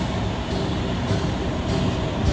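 Steady rumbling background noise on a recorded phone call, with no clear speech, of the kind a road-traffic or vehicle background makes.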